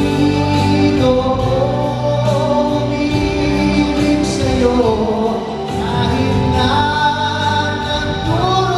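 A man singing live into a handheld microphone over instrumental accompaniment, holding long notes and sliding between them.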